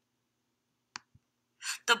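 A single computer mouse click about a second in, with a much fainter tick just after it, pressing play on an audio player in otherwise near silence; a narrating voice starts near the end.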